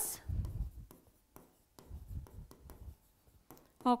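Marker pen writing on a board: stroke sounds in two spells of about a second each, the second starting near the middle.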